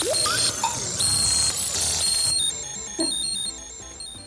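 An electronic jingle of high bleeping tones, starting suddenly and loud, thinning out after about two seconds and fading away near the end.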